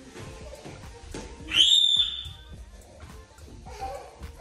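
A child's single shrill squeal about one and a half seconds in. It rises sharply in pitch and then holds high for about half a second.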